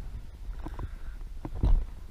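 Low, uneven rumble of wind on the microphone, with a few light knocks and one heavier low thump near the end from the camera being handled.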